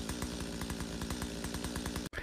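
Chainsaw sound effect: a chainsaw engine running steadily with a rapid, even rattle, stopping abruptly at the end.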